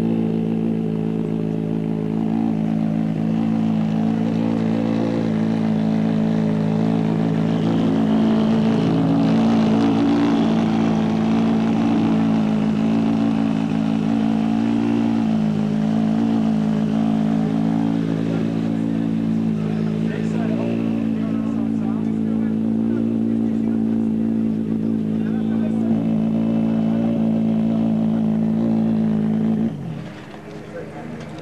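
Škoda Octavia WRC rally car's turbocharged four-cylinder engine idling steadily, with a low even hum, before cutting off abruptly just before the end.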